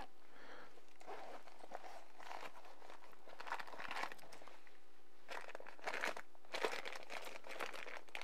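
A soft zippered eyewear case being unzipped, then clear plastic bags crinkling in several short spells as the glasses and lenses packed in them are handled.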